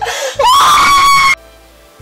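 A woman's anguished scream of grief, about a second long, rising in pitch and then held before breaking off, over low background music.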